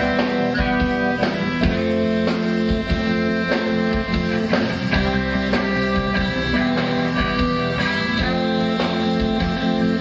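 Live rock band playing a song, with guitars most prominent over a steady drum-kit beat.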